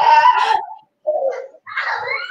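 Laughter: a wavering stretch of laughing, a short burst about a second in, and a rising high-pitched squeal near the end, heard over the background laughter that the hosts remark on.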